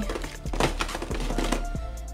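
Clear plastic nail-tip storage boxes being handled and set down in a drawer: a run of sharp plastic clicks and knocks, under background music.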